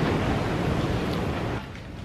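Steady rushing noise of wind buffeting the microphone, heaviest in the low rumble, dropping off sharply near the end.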